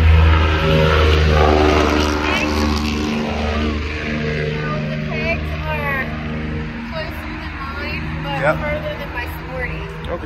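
A motorcycle engine running at a steady idle, loudest in the first second or two and then gradually fading, with people's voices faintly over it.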